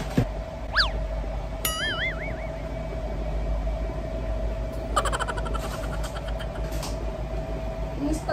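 Cartoon-style sound effects: a quick whistle swooping up and back down about a second in, then a falling tone that wobbles like a boing, and a fast rattling run of clicks about five seconds in, all over a steady hum.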